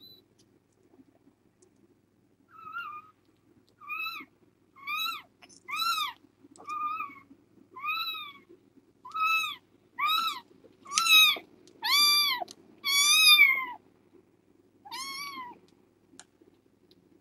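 A kitten mewing over and over: about a dozen high-pitched mews roughly a second apart. They start a few seconds in and grow louder, then one softer mew comes near the end.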